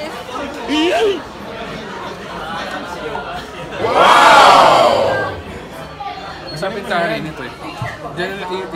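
Indistinct chatter of several voices in a crowded restaurant, with one louder, drawn-out voice about four seconds in that lasts about a second.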